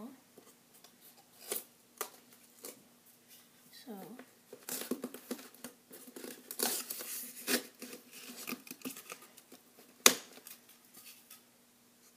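Hands handling the packaging inside an opened cardboard box: scattered light clicks and a stretch of rustling packaging in the middle, then one sharp loud knock about ten seconds in.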